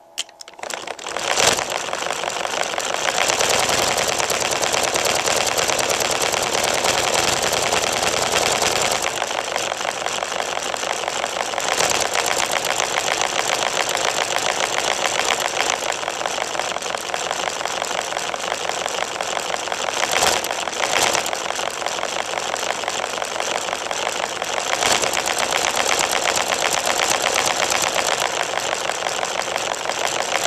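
Hand-cranked Lego Technic model of an inline two-cylinder diesel engine being run: its plastic crank, gears and pistons clatter in a fast, steady rattle, heavier for the first several seconds.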